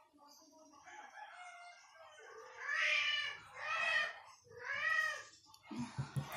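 Very young kitten mewing: a few faint cries, then three loud high-pitched mews about a second apart, each rising and then falling in pitch. These are the cries of a hungry kitten, only two to three weeks old, taken from its mother.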